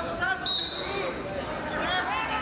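Spectators' voices talking in a gymnasium, with a brief steady high-pitched squeak or whistle-like tone about half a second in.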